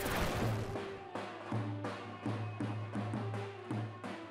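Music with a steady drum beat: a sudden swell at the start, then evenly spaced drum strikes, about three a second, over a low held bass note.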